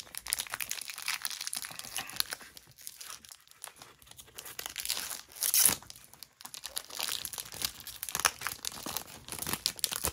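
A foil Pokémon booster pack wrapper crinkling in the hands and being torn open, in a quick crackling run with a louder burst about five and a half seconds in.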